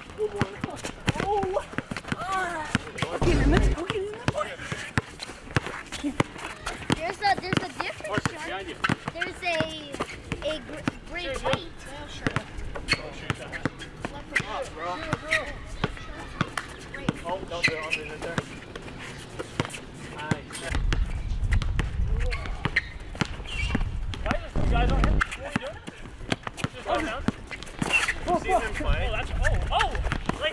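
Basketball dribbled on an outdoor asphalt court, bouncing again and again, with sneaker steps and scuffs of players moving around it.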